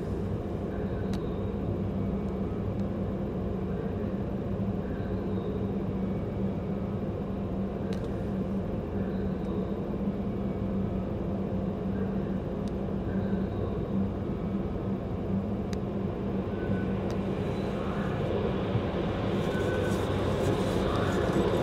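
A steady low rumble and hum from an idling car and the car-wash machinery, heard from inside the car. It grows slightly louder near the end as the car-wash entrance door rolls open.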